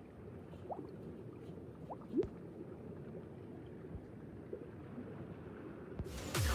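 Faint bubbling sound effect: a low watery burble with a few short rising bloops, the loudest a little after two seconds in.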